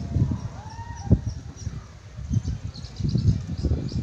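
Wind rumbling unevenly on the microphone outdoors, with a small bird repeating a short high chirp about three times a second, then chirping more irregularly in the second half. A couple of brief rising-and-falling calls sound around a second in.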